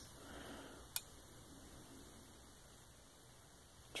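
Quiet room tone with a single sharp click about a second in.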